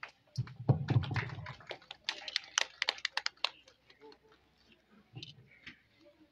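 A quick, irregular run of sharp clicks and taps lasting about three seconds, with a low rumble under the first second, then only a few faint clicks.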